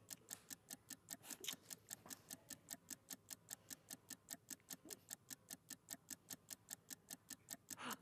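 Faint, steady ticking of a countdown-clock sound effect, about five even ticks a second, marking a deal's timer running down.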